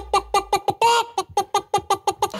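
A man's high-pitched voice rattling off one short syllable over and over, about eight times a second, in a fast 'ba-ba-ba-ba' chatter.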